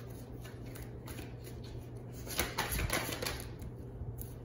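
Tarot cards being handled and shuffled: a quick flutter of card clicks about two and a half seconds in, lasting about a second, over a faint steady hum.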